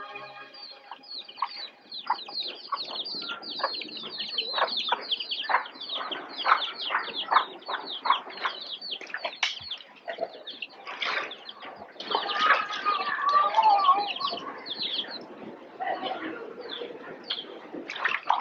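Birds chirping: a quick, steady run of short, high chirps, each sliding downward, several a second, busier and louder about twelve to fourteen seconds in.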